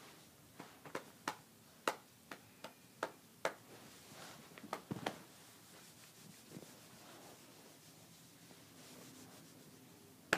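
Scattered light clicks and rubbing handling noises close to the microphone through the first five seconds or so, then quiet room tone.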